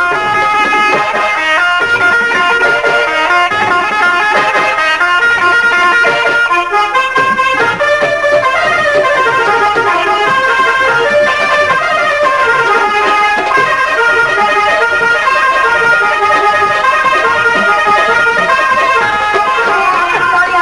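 Instrumental interlude of live Punjabi folk-stage music between sung verses: a plucked string instrument plays a quick melodic line of running notes, including falling runs about halfway through.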